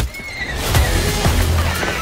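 A horse whinnying, a falling cry over the first second, set against dramatic film-trailer music with heavy low hits.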